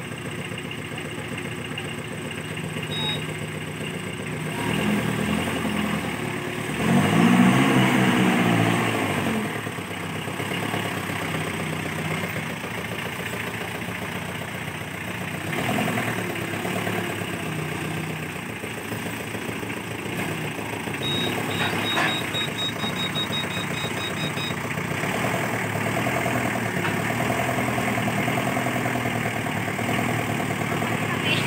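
Forklift engine running, revving up loudly for a couple of seconds about seven seconds in, then settling back to a steady run with smaller rises as it manoeuvres. A quick run of high beeps sounds a little past twenty seconds in.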